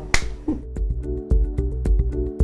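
Background music: quick, sharp clicks about five a second over a held chord and a pulsing low bass, which settles in about half a second in.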